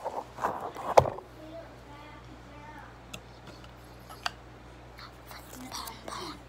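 Handling noise from a phone being moved about by hand: rustling in the first second, a sharp knock about a second in, and a smaller click a few seconds later. A faint, indistinct voice is heard at times.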